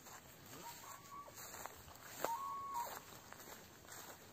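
A rooster crowing twice, each crow rising to a held note and then falling away. The second crow, about two seconds in, is the louder.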